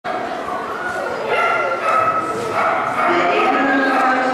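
Dogs yipping and whining, with pitch sliding up and down, over people talking.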